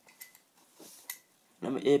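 A few faint, light metallic clicks and clinks from a CO2 cartridge being fitted into an airsoft pistol's magazine by hand.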